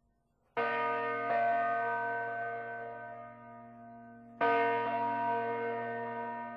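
A bell struck twice, about four seconds apart, each strike followed shortly by a lighter second stroke, ringing on and slowly fading between them.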